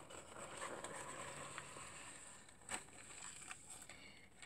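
Faint handling noises: soft rustling with a few light ticks and one sharper click or tap about two-thirds of the way through.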